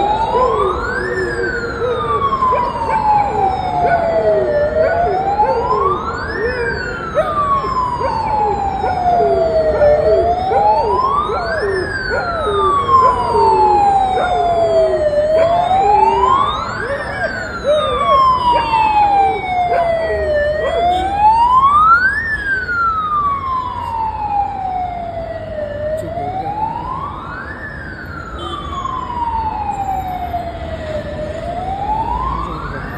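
A wailing siren, each cycle rising quickly in pitch and then falling slowly, repeating about every five seconds without a break.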